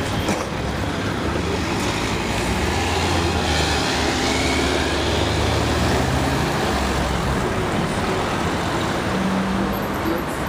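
City street traffic, with a car's engine driving past close by, loudest around the middle.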